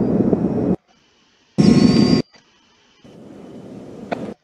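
Space shuttle launch rumble in ascent footage: a loud, low, noisy roar that cuts off abruptly under a second in, returns for about half a second in the middle, then comes back quieter near the end.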